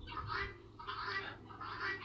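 Faint bird calls, a few short ones in quick succession.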